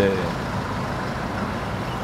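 Steady low background rumble of an urban outdoor setting, with a faint constant hum, like distant traffic and machinery; it holds level, with no splashing or knocks.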